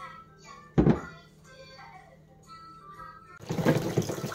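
A single loud thump about a second in as a plastic electric bottle sterilizer is set down on a stainless-steel draining board. Near the end a kitchen tap is turned on and water runs into a plastic washing-up bowl.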